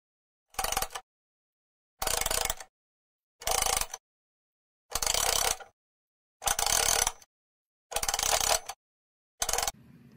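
Seven short bursts of workshop noise from plywood decking sheets being handled and pushed onto a steel trailer frame. Each burst is cut off abruptly into silence.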